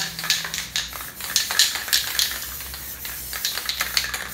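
Aerosol spray paint can spraying in many short hissing bursts.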